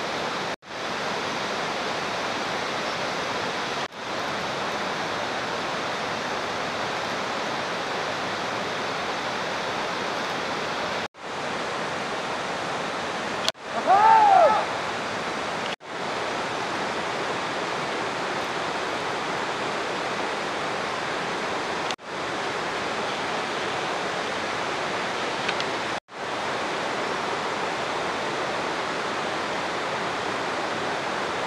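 Steady rushing noise like running water, broken by several brief gaps. A single short call rises and falls about halfway through.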